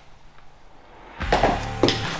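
Quiet for about a second, then an empty plastic oil bottle lands in a trash can with two knocks, its cap falling off. Music starts along with it.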